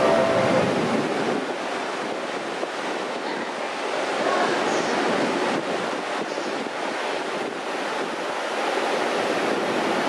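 Steady rushing noise on a station platform beside a standing electric commuter train with its doors open, with wind on the microphone.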